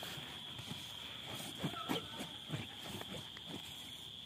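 Steady high-pitched insect drone, with scattered short soft thuds and swishes at an irregular pace.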